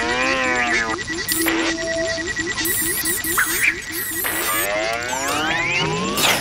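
Electronic music with a quick steady pulse of short notes, about four a second, over which warbling, zigzagging electronic bleeps and chirps rise and fall in several bursts, like robot chatter.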